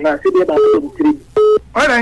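Talk over a radio phone-in line, broken about one and a half seconds in by a short, steady electronic beep that starts and stops abruptly.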